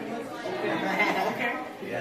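Indistinct chatter of several people talking at once, no single voice clear.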